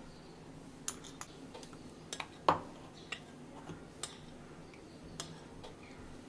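A steel spoon tapping and scraping against a steel bowl and a glass bowl while spice paste is emptied into curd and stirred in: a scatter of light clicks and taps, the loudest a ringing clink about two and a half seconds in.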